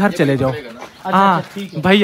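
A man's voice speaking in short, indistinct phrases close up, with a brief pause near the middle.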